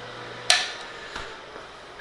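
A single sharp click about half a second in, from a hand working at the side of an opened HP 9825 computer, with a short ring after it and a fainter tick a moment later, over a low steady hum.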